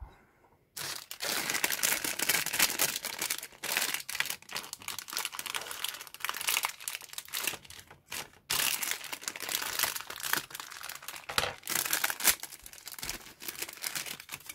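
Clear plastic kit bag crinkling as it is handled, cut open with a hobby knife and the plastic part is worked out of it; a dense, continuous crackle starting about a second in, with a short pause about halfway through.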